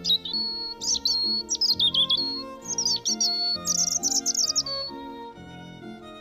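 A songbird singing loud phrases of high whistled notes and rapid trills, stopping about five seconds in, over gentle instrumental background music.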